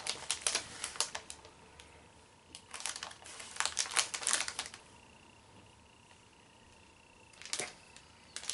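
A small candy wrapper crinkling and crackling as it is worked open by hand, in two spells of rapid crackles and a short burst near the end.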